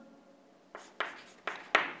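Chalk writing on a chalkboard: about four short, sharp strokes in the second half as a word is written.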